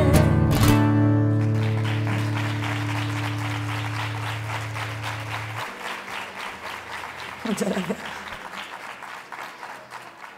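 The closing strummed chord of an acoustic guitar rings on for several seconds, then stops short about halfway through. Audience applause follows it and slowly fades, with a short vocal call from the crowd about three-quarters of the way in.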